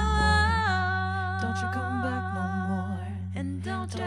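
Layered a cappella female vocals looped on a Boss RC-505 loop station: a held hummed chord over a steady low bass note, the harmony stepping down in pitch about half a second in. A few short percussive clicks come near the end.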